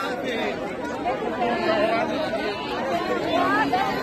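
A large crowd talking at once: dense, overlapping chatter of many voices.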